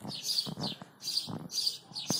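Small songbirds chirping, a string of short high chirps about three a second.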